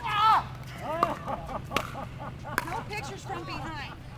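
Pickleball paddles striking a plastic ball: three sharp pocks a little under a second apart, as in a rally. Voices talk over them.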